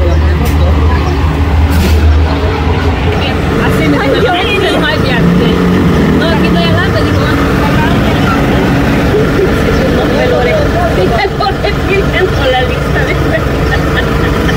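A motor vehicle's engine running steadily, with a deep low rumble strongest in the first couple of seconds. People talk over it.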